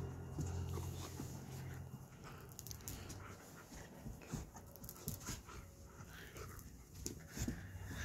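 A dog breathing hard while tugging on a rope chew toy, with faint irregular clicks and scuffles. A low steady hum fades out in the first two seconds.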